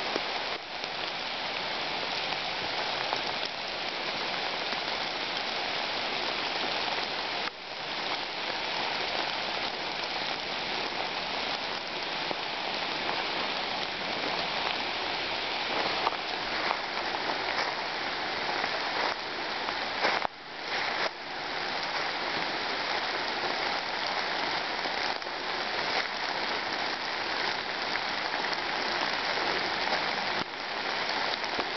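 Steady rain falling through a leafy deciduous woodland canopy, an even hiss that dips briefly twice, about a quarter of the way in and again about two-thirds in.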